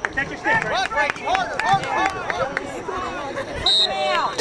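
Many overlapping voices of players and sideline spectators calling out during a youth lacrosse game, with a short high steady whistle tone just before the end.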